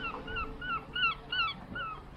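A bird calling in a quick series of short, clear notes that each rise and fall, about four a second.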